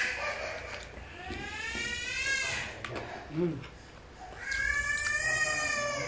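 A domestic cat meowing twice: two long, drawn-out calls a couple of seconds apart, the first rising in pitch.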